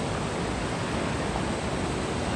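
Steady rush of a waterfall and the white water of the rocky stream below it, an even noise without breaks.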